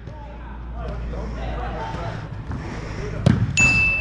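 A soccer ball is kicked and bounces on artificial turf in a large, echoing indoor hall, with players' voices in the background. A sharp kick lands about three seconds in, and a short, high whistle-like tone follows near the end.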